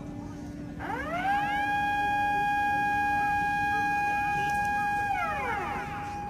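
Outdoor public warning siren winding up about a second in, holding one steady pitch with overtones for about four seconds, then winding down near the end.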